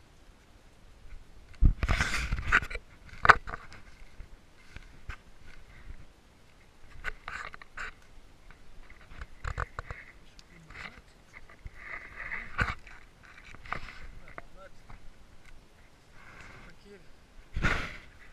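Handling noise from an action camera being moved about: irregular bumps and rustling, loudest about two seconds in and again near the end.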